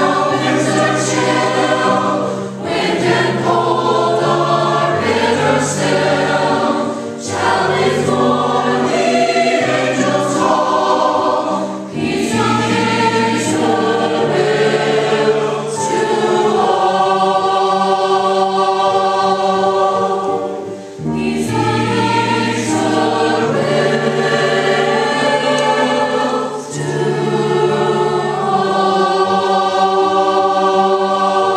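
A mixed choir of men's and young women's voices singing together in phrases, with brief pauses for breath every few seconds.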